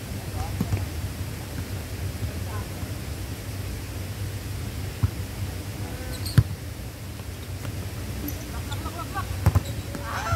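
A volleyball being struck in a rally: a few sharp slaps of hands on the ball, the loudest about six seconds in and two close together near the end, over a steady low rumble of wind and traffic.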